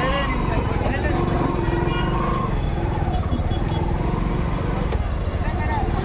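Motorcycle engine running steadily at low speed, under the voices of people talking in a busy market.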